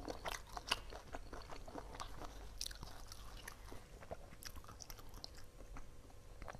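Close-miked chewing of shrimp: a dense run of wet, crackly mouth sounds and small clicks.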